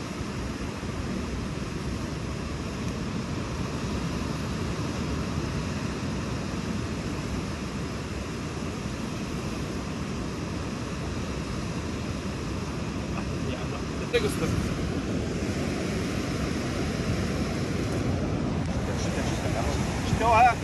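Steady roar of ocean surf mixed with wind buffeting the microphone, growing louder about fourteen seconds in.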